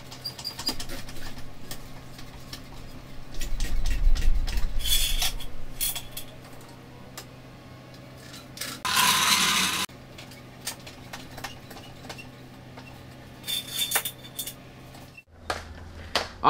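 Metal clinks and clanks from a floor jack as its long handle is worked to raise a car, some clinks ringing briefly. There is a low rumble about four seconds in and a short rushing hiss about nine seconds in, over a steady low hum.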